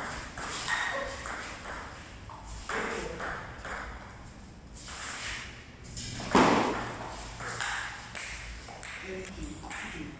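Table tennis ball clicking off paddles and the table in a rally, sharp ticks at irregular spacing with a slight echo of a large hall. About six seconds in there is one much louder burst.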